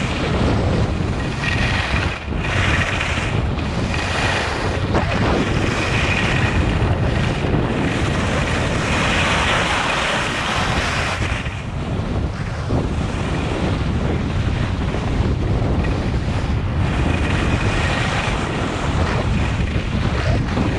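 Wind rumbling on a skier's body-worn camera microphone at speed, with skis hissing over groomed snow; the snow hiss grows louder for a couple of seconds around the middle.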